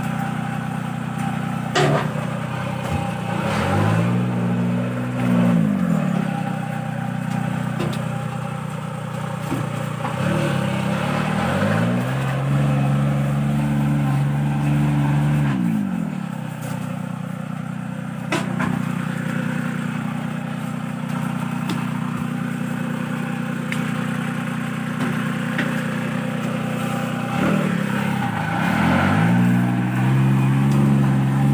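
Engine of a small motorised dumper (power barrow) running steadily, its revs rising and falling three times as it drives. A few sharp knocks sound over it.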